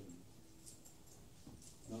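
Near silence: faint room tone in a pause between speech, with a few soft faint ticks.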